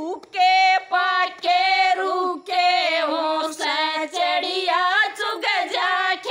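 Women singing a Haryanvi bhajan together without instruments, their voices carrying the tune in short phrases with brief breaks between them.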